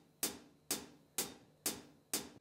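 Hi-hat from GarageBand's Bluebird drum kit played by the Beat Sequencer as a simple click track. Four even hits, about two a second, one on each beat of the bar.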